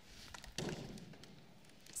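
A few faint taps, with a soft thump about half a second in.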